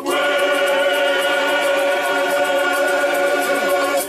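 A choir of men singing, holding one long chord that breaks off suddenly at the end.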